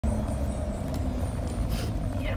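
Steady low rumble of a school bus's engine and road noise, heard inside the passenger cabin.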